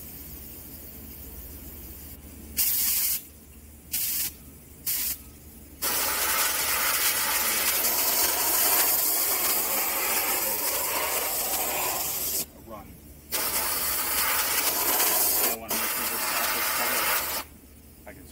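Air-powered gravity-feed paint spray gun hissing as its trigger is pressed: three or four short spurts a few seconds in, then a long spray of about six seconds and two more long sprays with short breaks between. The trigger is being feathered to lay down paint for a weathering run.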